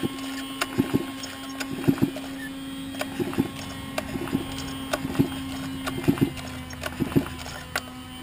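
Huztl MS 660 clone two-stroke chainsaw cranked over on its recoil starter with the spark plug out and the saw upside down, pulled repeatedly about once a second to push liquid fuel out of the crankcase through the plug hole. A steady hum runs underneath.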